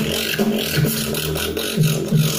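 Vocal beatboxing: a low hummed bass line held under the beat, stepping between notes a few times, with hissing percussion sounds above it.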